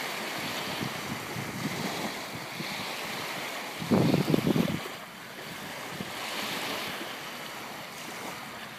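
Small lake waves lapping at a stony shoreline, with wind blowing across the microphone. About four seconds in, a louder gust buffets the microphone for under a second.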